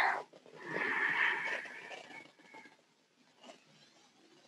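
A person's long audible exhale, swelling about a second in and fading away over the next second and a half.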